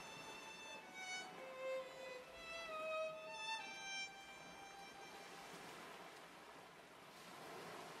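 A faint solo violin plays a short melody of single notes, lasting about three seconds, over a soft steady wash of waves.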